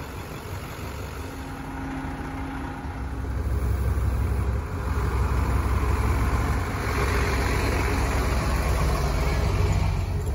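Fire truck engine running close by. It grows louder about three seconds in and fuller again about seven seconds in.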